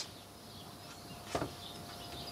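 Quiet background with faint bird chirps, a faint steady high tone, and one sharp click a little over a second in.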